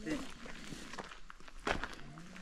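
Footsteps on a gravel path at walking pace, a few separate steps with one sharper step near the end.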